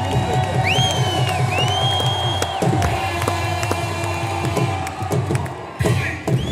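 A large stadium crowd cheering over loud music with a steady, regular beat. High, drawn-out arching notes sound over it in the first half.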